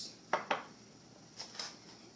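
A spoon clinking twice in quick succession against a glass mason jar, then a couple of faint taps near the end.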